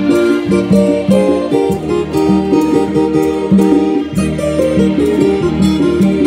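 Congolese-style church band music led by an electronic keyboard, with quick melody lines over a bouncing bass line and steady percussion.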